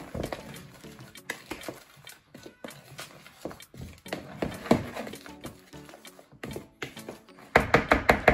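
Background music over hands mixing dry flour in a plastic bowl: scattered soft taps and rustles, then a run of quicker, louder knocks of a spoon against the bowl near the end.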